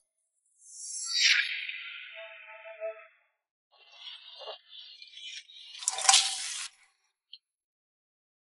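A falling whoosh effect about a second in, then hot oil sizzling in an iron wok as a spatula stirs egg. The sizzle is loudest around six seconds and cuts off suddenly.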